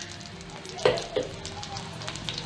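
Grains and split lentils sizzling in hot oil in a pan, a steady frying hiss. Two short, louder sounds come close together about a second in.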